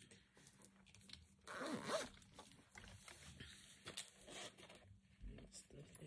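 Zipper on a small fabric cosmetic pouch being pulled, with soft rustling and clicking as the pouch and its contents are handled.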